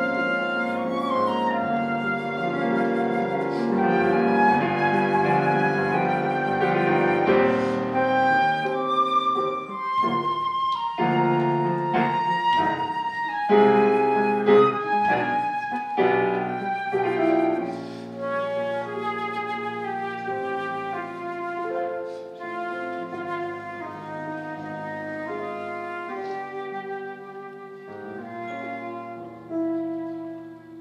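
A concert flute and piano playing a classical piece together, the flute carrying the melody over piano accompaniment. The music is fuller and louder in the first half and grows quieter and sparser in the second half.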